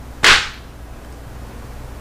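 A single short swish about a quarter second in: the frosted plastic plate of a Gemini die-cutting machine being slid into place on the mat.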